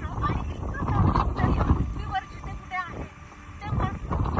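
Strong, gusty wind buffeting the microphone, a low rumble that is loudest in the first two seconds and eases near the end, with a voice heard over it.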